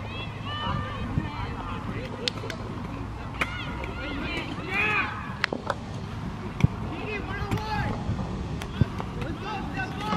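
Young players' and sideline voices calling out across an open soccer field, with several sharp knocks, one much louder than the rest about two-thirds of the way in.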